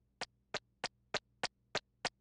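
Cartoon footstep effect of a small chick walking: light, sharp taps, evenly spaced at about three a second, over a faint steady hum.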